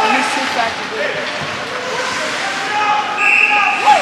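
Players and onlookers calling out across an ice hockey rink, their voices echoing in the arena. Near the end a referee's whistle blows for about half a second, the loudest sound here.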